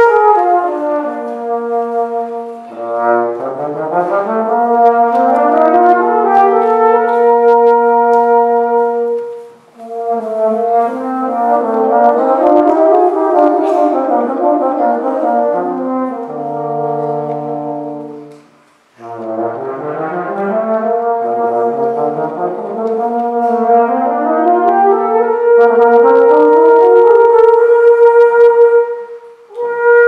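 Concert brass band playing held chords under rising and falling runs of notes, with two short breaks about ten and nineteen seconds in.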